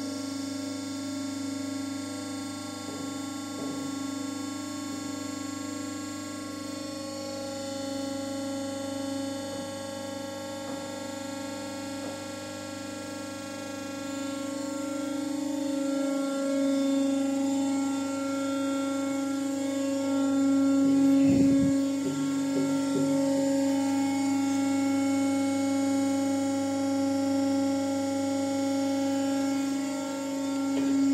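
Hydraulic pump unit of a Weili MH3248X50 cold press running with a steady whining hum as the upper platen slowly lowers, growing somewhat louder midway.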